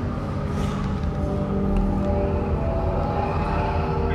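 Ride soundtrack of the Star Destroyer hangar: a steady low rumble under several sustained, held tones, with no sudden events.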